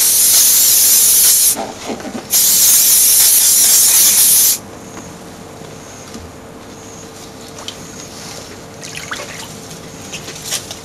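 Aerosol spray can spraying onto a long rubber boot in two long hissing bursts, the first about a second and a half, the second about two seconds after a short pause.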